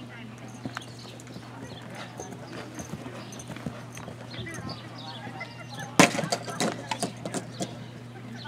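Horse's hooves cantering on arena dirt, soft irregular hoofbeats, then a run of much louder thuds about six seconds in as the horse takes off and lands over a small jump.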